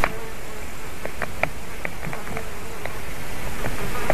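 Flies buzzing briefly near the nest microphone over a steady background hiss, with scattered short, faint ticks.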